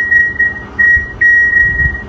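A loud electronic beeper sounding a single high steady tone that pulses on and off in segments of about half a second with short gaps.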